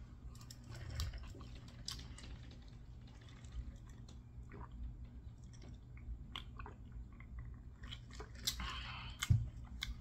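Close-miked chewing of chicken wings, with many small wet mouth clicks and smacks. Sips and swallows from a drink tumbler follow in the second half, and a single thump comes near the end.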